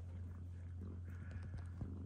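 Domestic cat purring close to the microphone: a steady low rumble.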